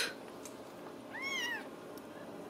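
A Ragdoll kitten meowing once: a single short, high meow that rises and then falls in pitch, a little over a second in.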